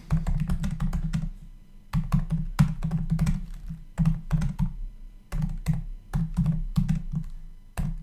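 Typing on a computer keyboard: irregular runs of keystroke clicks with short pauses between words.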